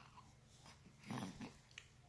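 Eight-week-old baby making a short, breathy grunting vocal sound about a second in.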